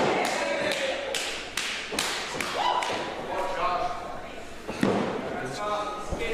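A series of thuds on a wrestling ring's canvas, several in quick succession in the first two seconds and another near the end. Voices call out in the hall between them.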